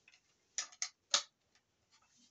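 Plastic Lego pieces clicking as they are handled on a baseplate: three sharp clicks roughly a quarter-second apart, the last and loudest about a second in.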